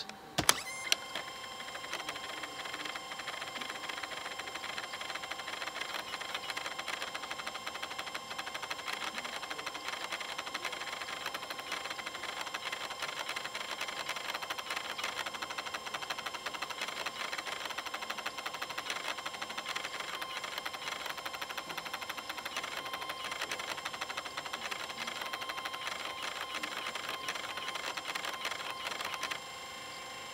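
LS-240 SuperDisk drive in an IBM ThinkPad A31 reading a regular floppy disk at high speed while files are copied to the hard drive. It makes a steady whirring with rapid fine ticking from the read head, the sound of a 4x-speed floppy drive, and stops shortly before the end.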